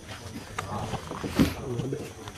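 Handheld microphone handling noise as the mic is passed from one person's hand to another's: rustles and clicks with a louder bump about one and a half seconds in, over faint background voices.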